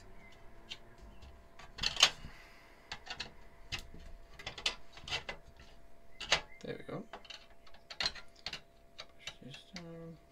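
Irregular small metallic clicks and taps as a long screwdriver works screws inside a steel PC case, the sharpest about two seconds in.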